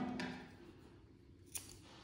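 Scissors snipping a strand of yarn once: a single short, sharp cut about one and a half seconds in.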